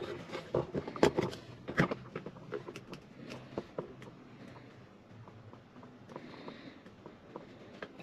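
Handling noise from a camera being moved and fixed to a mount: a few sharp clicks and knocks over the first few seconds, then faint room tone inside a parked car.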